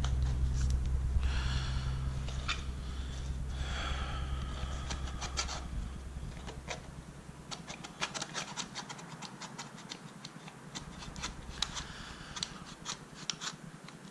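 Utility knife blade scraping and cutting along the edge of a football boot's coated soleplate, with irregular scratchy clicks as it works through the tough material. A low hum sits under the first several seconds.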